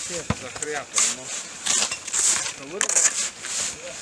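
Footsteps crunching on packed snow, about five steps roughly two-thirds of a second apart, with quiet voices talking underneath.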